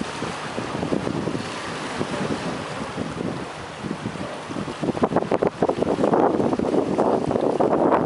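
Wind buffeting the microphone over sea water washing against a concrete pier block; the buffeting grows louder and rougher about five seconds in.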